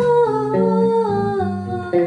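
A woman singing a long held line that slowly falls in pitch, accompanied by plucked electric guitar notes.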